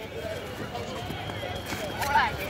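Faint, mixed voices of players and onlookers around a kabaddi court, with no single loud event.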